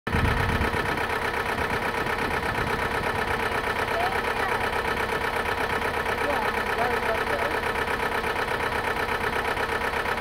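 An engine idling steadily, with a fast, even pulse.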